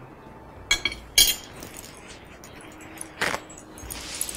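Metal spoon clinking while tossing salad: three sharp clinks with a short ring, the loudest a little over a second in, and a third near the end.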